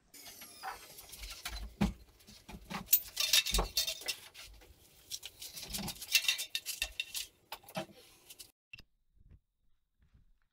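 Metal bike parts knocking, clinking and rattling as a motorized bicycle frame is handled and lifted off a workbench: irregular knocks and clinks, busiest around two to four seconds in and again around six seconds, then dying away.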